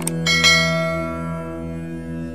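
A quick double mouse click, then a bright bell chime that rings out and fades over about a second and a half. This is the sound effect of a subscribe-button animation. Beneath it runs a steady droning background of music.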